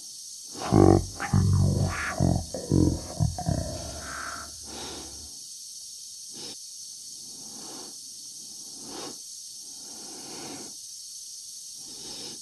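The end of the song in the first four seconds: a loud phrase with a deep backing. Then a man's slow breathing inside a spacesuit helmet, one faint breath about every one and a half seconds, over a steady hiss.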